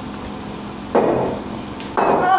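Plate-loaded dumbbells set down with a metallic clank about a second in, followed by a smaller tick near the end.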